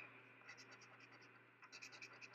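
A coin scraping the scratch-off coating from a paper lottery ticket: faint, quick strokes in two short runs, one about half a second in and one near the end.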